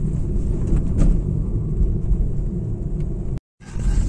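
Car driving on an unpaved dirt track, heard from inside the cabin: a steady low rumble of engine and tyres. It breaks off for a moment near the end.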